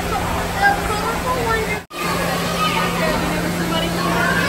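Indistinct chatter of many voices in a busy indoor space, with no clear words. The sound drops out briefly about two seconds in, and after that a steady low hum runs under the chatter.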